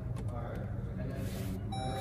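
An electronic chime from the 2021 Jeep Compass as its ignition is switched on with the start button: a steady tone begins near the end. Faint voices sit underneath.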